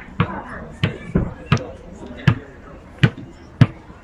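A series of sharp, fairly regular thumps, about one every half second to three quarters of a second, with voices in the background.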